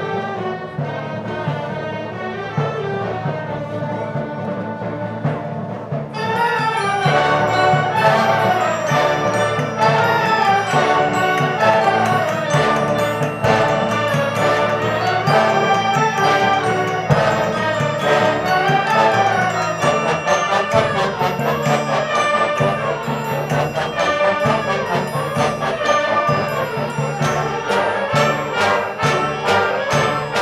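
Concert band of brass and woodwinds playing live, with a strong brass sound. About six seconds in the full band comes in, louder and brighter, and plays on at that level.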